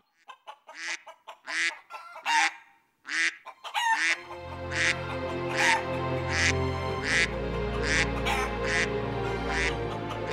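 Waterfowl calling, a string of short honking calls at roughly one a second. From about four seconds in, low sustained music plays under the calls.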